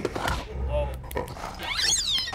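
Cartoon polar bear's wordless vocal sounds, short groans after a fall, with a quick high sliding squeal near the end.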